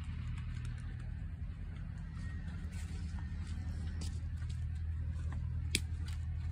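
Steady low machine drone, like an engine running, with faint scattered clicks of the cows' hooves as they walk along the alley and one sharper click near the end.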